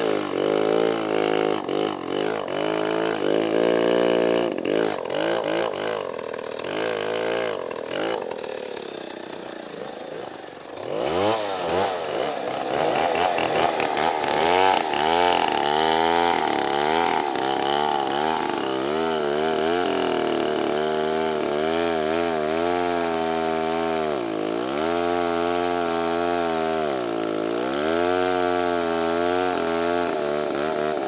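Petrol two-stroke chainsaw cutting into a large tree trunk, the engine running at high revs with its pitch wavering under the load of the cut. About ten seconds in it drops away toward idle, then revs up again and cuts on, its pitch dipping briefly twice near the end.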